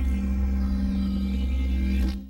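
Sustained low musical drone of a WGBH Channel 2 station ident, held steady with no melody or voice.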